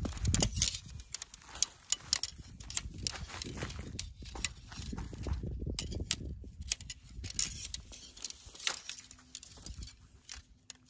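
Shock-corded tent pole sections clicking and knocking against each other and their pivot hardware as they are handled and fitted together, in irregular sharp ticks.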